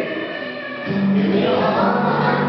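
A group of young girls singing a song together with musical accompaniment. The music dips briefly, then comes back fuller about a second in.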